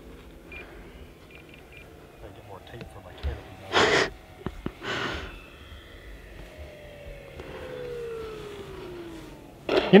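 Electric motor and propeller of an E-flite Commander RC plane, its whine falling steadily in pitch over a few seconds as it throttles down to land. Two short rushes of noise come about four and five seconds in.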